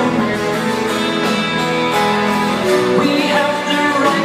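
Live band music with guitar, recorded from the audience in a large concert hall.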